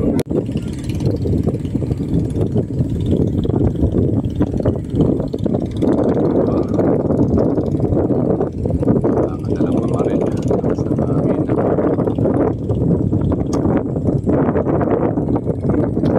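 Indistinct voices mixed with a steady low rumbling noise.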